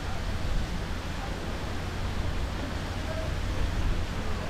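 Strong wind buffeting the microphone: a steady, gusting low rumble with a hiss above it.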